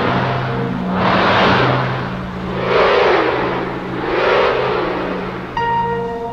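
Horror film score: a steady low drone under whooshing swells that come and go about every one and a half seconds, four in all, with a wavering tone rising and falling inside the last two.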